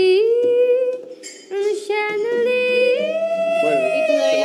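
A woman's voice singing long held notes without accompaniment. There is a short break a little over a second in, then the pitch steps up and holds higher near the end.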